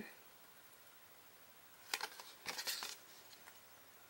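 Backing being peeled off double-sided score tape on a cardstock box tab: two short, faint peeling sounds about two seconds in, the second a little longer.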